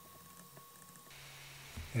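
Faint room tone with a few light taps of a stylus writing on a tablet screen, and a weak steady high tone that stops about a second in.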